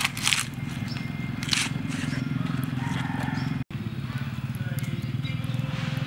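Dough frying in a wok of bubbling hot oil, with a few sharp crackles near the start as the piece goes in, over a steady low rumble. The sound drops out for an instant a little past halfway.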